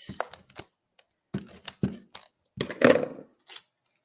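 Hands handling cut pieces of paper and cardstock on a tabletop: a few soft taps and rustles, with one louder thump and rustle about three seconds in.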